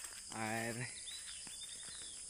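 Steady high-pitched insect chirring, with faint thin bird calls in the second half. A short spoken syllable cuts in about half a second in.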